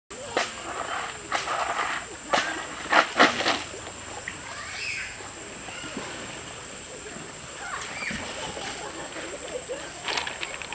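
Water splashing and sloshing as a person wades through a shallow stream, with a run of sharp splashes in the first few seconds, the loudest about three seconds in, then quieter.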